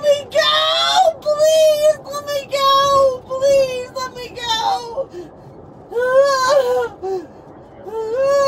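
A woman wailing and sobbing in a string of high, drawn-out, wavering cries, with short pauses between them.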